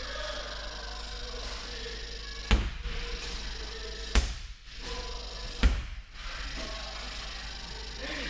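Three sharp thumps about a second and a half apart, heavy in the low end, over a steady low background hum.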